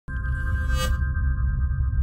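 Logo intro music: a held electronic chord over a deep, steady low rumble, with a bright high shimmer that fades out about a second in.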